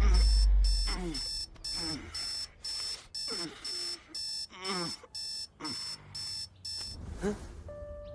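Electronic alarm beeping in a steady pattern of about two high beeps a second, which stops about seven seconds in, while a man groans and grumbles as he is woken. A deep rumble dies away in the first second.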